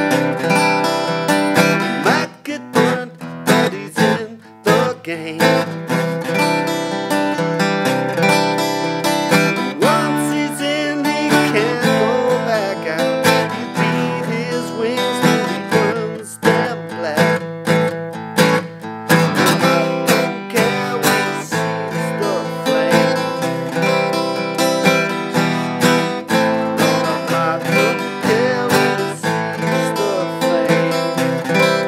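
Steel-string acoustic guitar strummed in a continuous rhythmic chord pattern, with sharp percussive strokes mixed into the strumming.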